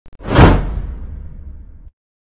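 Intro whoosh sound effect: two faint clicks, then a loud whoosh that swells in under half a second and fades into a low rumble that cuts off suddenly near the end.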